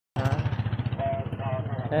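A motorcycle engine running close by with a rapid throb, about a dozen beats a second, strongest in the first second, while people's voices call out over it.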